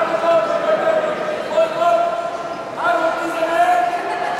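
Several raised voices calling out and shouting in a large echoing sports hall, with long, drawn-out pitched calls overlapping one another.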